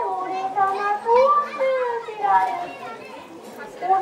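A child kabuki actor declaiming lines in Japanese in a high, stylised voice, drawing syllables out into long, gliding tones, growing quieter in the second half.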